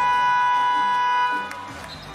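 Basketball arena buzzer sounding one loud, steady tone for about a second and a half, then cutting off; it signals a stoppage in play.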